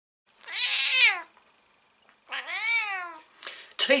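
Domestic tabby cat meowing twice, each call rising and then falling in pitch, about a second apart.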